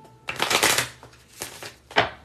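Tarot cards being shuffled by hand: a long fluttering run of cards about a quarter second in, a shorter one after about a second and a half, then a sharp snap of the deck near the end.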